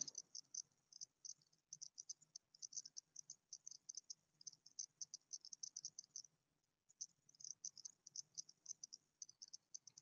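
Near silence, with a faint, fast, irregular high-pitched ticking that pauses briefly about six seconds in.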